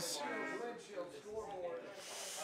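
Speech only: men's voices from the commentary booth, quieter than the surrounding talk, clearest in the first half-second.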